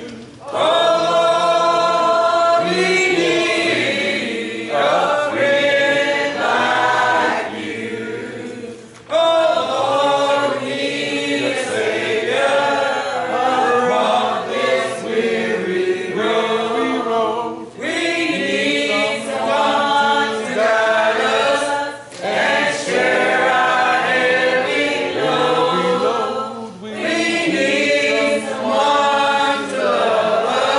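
Church congregation singing a hymn together a cappella, in long held phrases with brief breaks between lines.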